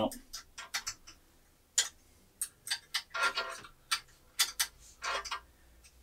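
Irregular light clicks and taps of a hand tool working the M5 bolts that hold the CNC gantry together as they are tightened, some coming in quick runs.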